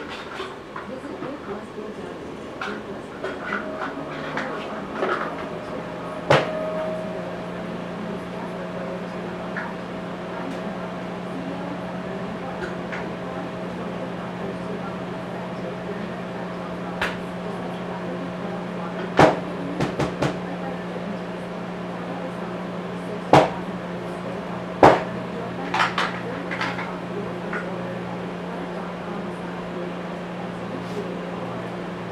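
Scattered knocks and clatters of parts and tools being handled in a workshop, over a steady low hum that sets in a few seconds in.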